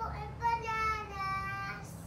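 A toddler's voice singing one long held note that slides slowly down in pitch.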